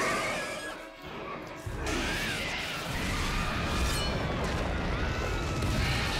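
Dramatic background music over crashing and a deep rumble of destruction. The rumble drops away briefly about a second in and comes back strongly a moment later.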